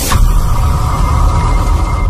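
Cinematic logo-intro sound effect: a sharp impact hit right at the start, then a deep rumble under a steady high ringing tone.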